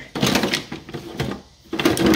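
Plastic spring clamps and small metal clamps clattering and rattling against each other in a drawer as a hand rummages through them, with a brief lull about one and a half seconds in.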